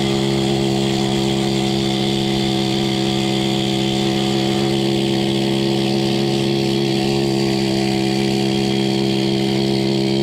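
Hand-held pneumatic tool running steadily at full speed, a constant whine with no change in pitch, used inside the track loader's final drive housing.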